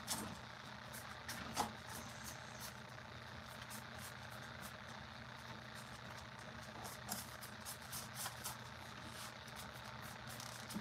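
Steady low background hum with scattered small clicks and taps from paintbrushes and handled paper mache props, a few of them in quick pairs around seven seconds in.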